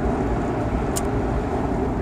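Steady road and engine noise inside a moving car's cabin, with one brief click about a second in.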